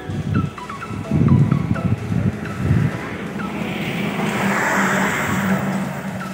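Motor vehicle running, with uneven low rumbling gusts of wind on the microphone in the first half and a rushing hiss swelling in the middle.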